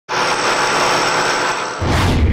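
Intro sound effect of a power tool machining metal: a steady grinding hiss with a faint whine, starting abruptly. A deep rumble starts near the end.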